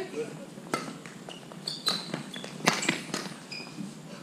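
Sharp taps of badminton rackets and shuttlecock on a wooden hall court, with short sneaker squeaks and footsteps on the floor. The loudest tap comes a little before the end.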